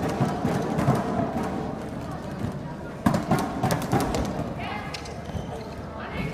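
A badminton rally: sharp knocks of rackets striking the shuttlecock and players' footfalls on the court, over arena crowd noise, with the loudest knock about three seconds in.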